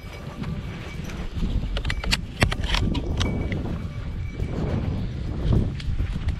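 Footsteps crunching through dry brush and leaf litter, with scattered clicks and knocks from gear and the shotgun being handled close to the microphone.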